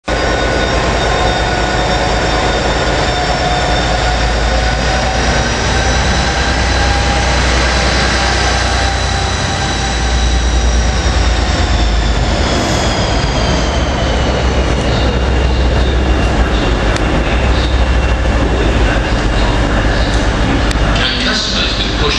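Class 57 diesel locomotive and its coaches rolling past: a steady low rumble with a high whine over it that sinks in pitch about halfway through. Near the end the wheels click over rail joints.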